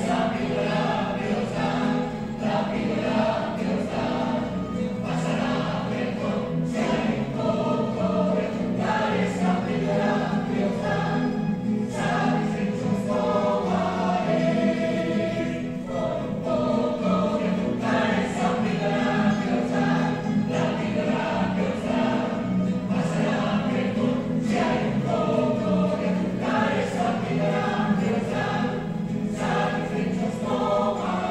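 Plucked-string ensemble of guitars and bandurria-family instruments strumming in a steady rhythm, with a choir of men and women singing along.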